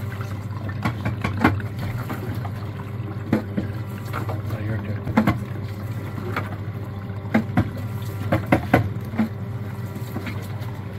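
Sempa automatic orange juicer running and squeezing oranges: a steady motor hum with irregular clacks and knocks, several in quick succession late on.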